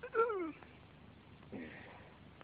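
A man's voice making a short, high cry that falls in pitch, much like a meow, just after the start, then a fainter brief sound about three-quarters of the way through.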